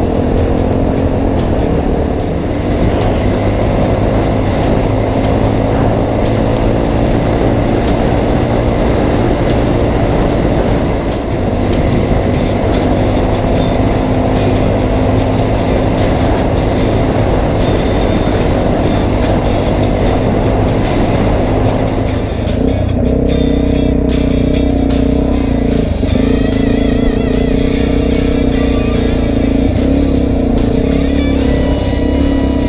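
Suzuki DR-Z400E's single-cylinder four-stroke engine running as the bike is ridden along a dirt road, with background music over it. About three-quarters of the way in, the sound changes to steadier held tones.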